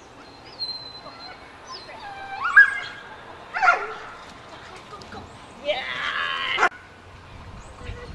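Shouted verbal cues from a handler to an agility dog: a few short calls, then one longer drawn-out call about six seconds in, with the dog barking at times.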